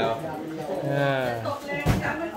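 Voices talking, then near the end a single sharp click of a table tennis ball being hit.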